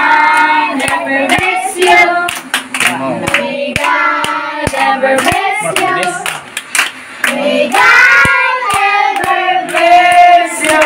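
A group of children and adults singing a birthday song together, with hands clapping along to the beat.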